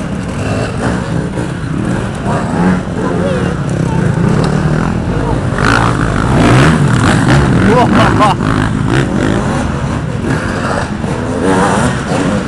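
Off-road dirt bikes riding past one after another on a dirt track, their engines revving up and dropping back as they climb.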